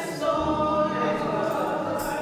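Church congregation singing a gospel song together, a woman's voice leading, with long held notes.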